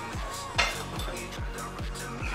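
Electronic background music with a steady kick-drum beat; about half a second in, a single sharp metallic clank as the iron weight plates on the loaded barbell knock during a preacher curl.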